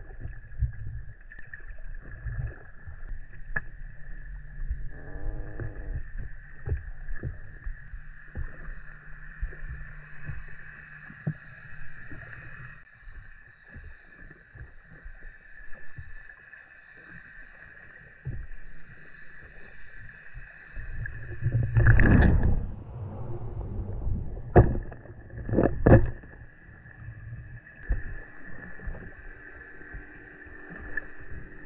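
Sound picked up underwater by a camera on a shelly seabed in the surf: a low rumble of moving water with scattered clicks and knocks, over a steady high hum. About 22 seconds in a louder rush of water comes through, followed by two sharp knocks a second and a half apart.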